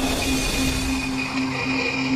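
A steady hiss with a held low droning tone and a fainter high tone over it, unchanging for the whole stretch.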